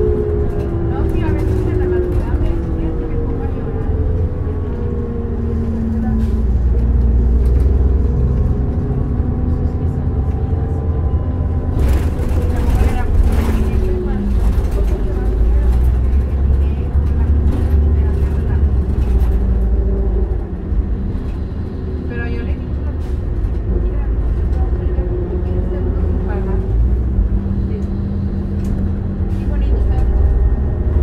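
2002 New Flyer D40LF diesel city bus heard from inside while driving: a deep steady drone with whining tones that slide in pitch as the bus speeds up and slows. A brief burst of hissing noise comes about twelve seconds in.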